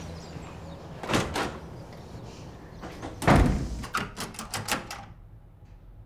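A door knocked twice, then slammed shut hard a little over three seconds in, followed by a quick run of clicks from its latch or lock.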